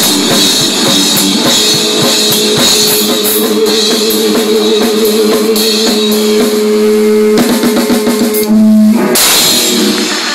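Live rock band playing loud: rapid drum kit beats with cymbals under an electric guitar holding one long sustained note. The loudest moment comes near the end, when the held note breaks off in a final burst.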